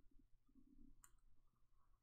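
Near silence: faint room tone with a single soft click about halfway through.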